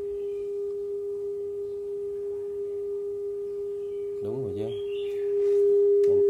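A steady 400 Hz calibration tone from a Nakamichi ZX-7 cassette deck, played while the deck's record and playback level is being checked and adjusted. The tone gets louder about five seconds in.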